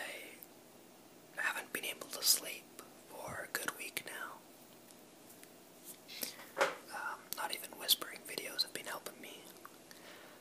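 A person whispering in two stretches, with a pause of about a second and a half between them.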